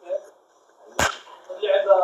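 A single sharp smack, such as a hand slapping or clapping, about a second in, followed by a voice near the end.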